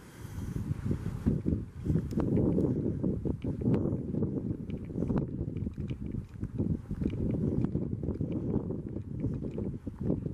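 Wind buffeting a handheld camera's microphone: an uneven low rumble that rises and falls in gusts, with a few faint clicks scattered through it.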